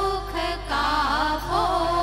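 Women's voices singing a Gujarati Navratri garba song into microphones, holding notes and then gliding through ornamented turns partway through, over sustained organ accompaniment.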